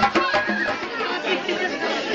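Ahwach folk music with frame-drum beats stops about half a second in. It gives way to the chatter of a crowd of many voices.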